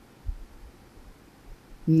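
A pause in a man's speech, with faint low thuds about a quarter second in; he starts speaking again just before the end.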